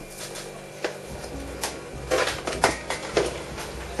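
Dried calendula flowers rustling as a handful is crumbled and dropped into a small stainless-steel saucepan of water, with scattered light ticks that cluster about two to three seconds in.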